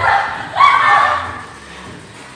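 Two short, loud, high-pitched cries; the second, about half a second in, is longer and slides in pitch.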